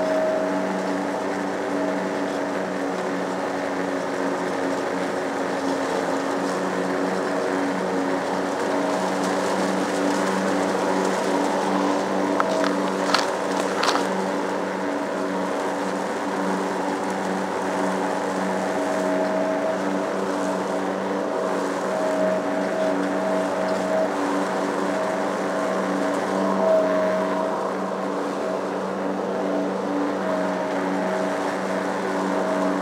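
Petrol lawn mower engine running steadily under load while cutting grass, with a few brief sharp clicks about halfway through.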